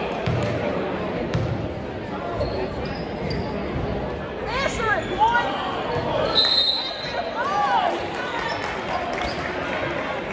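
Basketball bouncing on an indoor gym court amid a constant hubbub of crowd and player voices in a large hall, with a sharp knock about a second in. A few short rising-and-falling squeaks come about halfway through, and a brief high steady tone just after.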